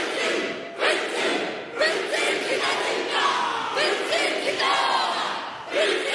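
A young woman's voice shouting a speech in te reo Māori in a forceful, chant-like war-cry delivery, in phrases broken by short pauses.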